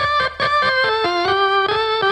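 A keyboard plays a short melody of held notes alone, without drums or bass, as a break in a live ska band's song.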